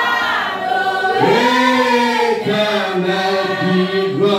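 A church congregation singing a hymn together, led by a man singing into a microphone from a book; the voices hold long sustained notes, with a rise in pitch about a second in.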